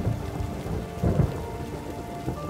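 Steady rain with a low rolling rumble of thunder, swelling about a second in.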